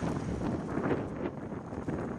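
Wind blowing on the microphone, an uneven rush strongest low down.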